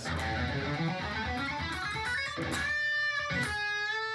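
Electric guitar played with a pick: a fast run of notes across the strings, then two held notes ringing out in the second half. The tone is balanced, creamy, sultry, the sound of the even 'home position' picking across all strings.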